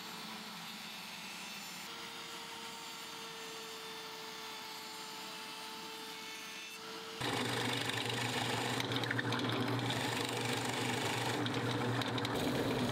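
Router in a router table running as its roundover bit rounds the edges of a wooden block: a steady hiss with a faint whine. About seven seconds in the sound changes to a drill press running with a low, steady hum as a bit bores into the wood.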